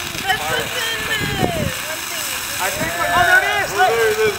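Several onlookers' voices and excited exclamations overlapping, over a steady hiss from a thermite reaction burning in a clay pot.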